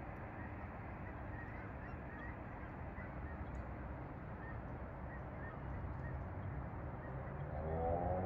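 Faint, scattered short honks from a large high-flying flock of geese, over a steady low background rumble.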